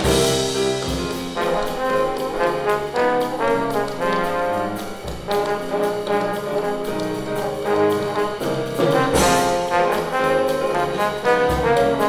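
Trombone playing a swing jazz melody, with piano and drum-kit accompaniment. Crash-cymbal hits sound right at the start and again about nine seconds in.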